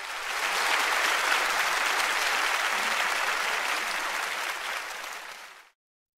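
Audience applause that swells at the start and holds steady, then stops abruptly near the end.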